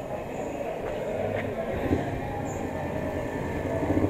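Vehicle engines running on a petrol station forecourt: a steady low rumble, with a pulsing engine note growing louder near the end.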